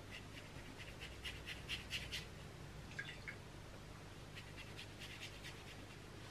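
Round watercolour brush dabbing and stroking wet paint onto textured watercolour paper: faint, quick scratchy strokes in clusters, one run in the first two seconds, a few about three seconds in, and another run near the end.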